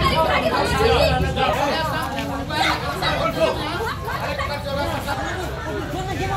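Several people talking at once: an agitated crowd's overlapping chatter, with no single voice clear.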